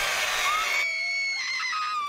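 A young woman screaming in a high, drawn-out scream, harsh and rough for about the first second, then a cleaner, held high pitch that cuts off right at the end.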